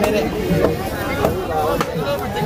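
A crowd of voices shouting and chanting together, crossed by sharp percussive strikes about every two-thirds of a second.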